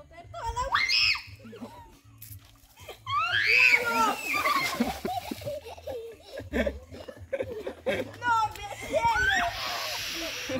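A group of children screaming and laughing, with a rising cry about a second in and a loud burst of shrieks and laughter from about three seconds in, as the basin of water balanced on their feet tips and soaks them.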